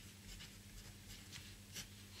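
A pen writing on paper: faint, short scratching strokes of handwriting.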